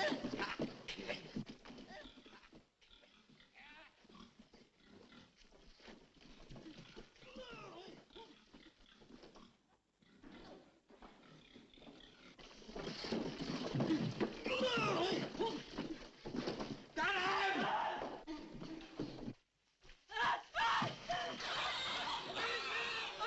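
Shrill squealing cries that swoop up and down in pitch. They grow much louder about halfway through, break off briefly, then start again near the end.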